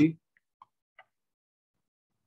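A spoken word ends right at the start, then near silence with three faint ticks within about the first second, from a computer mouse.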